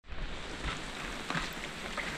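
Light rain falling on rainforest foliage: a steady hiss with a few faint drips.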